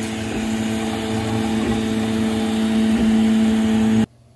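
Original Prusa 3D printer running: a steady, pitched motor whine with a few light clicks, cutting off suddenly at the end.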